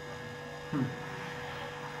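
Steady electrical hum: a low, even drone with a fainter higher tone. A brief low vocal sound from one of the men comes about three quarters of a second in.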